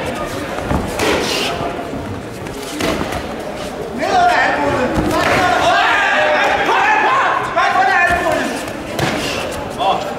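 People shouting during a kickboxing bout, loudest in the middle of the stretch, with sharp thuds of punches and kicks landing.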